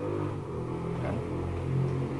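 A steady low engine rumble running throughout, with a slight waver in pitch.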